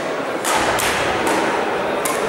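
Badminton rackets striking a shuttlecock in a fast doubles rally: three sharp cracks within about a second, with dull thuds underneath.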